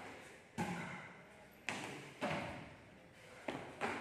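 Dull thuds of feet landing on a concrete floor as trainees jump in and out of tyres, about four landings with echo from the large hall.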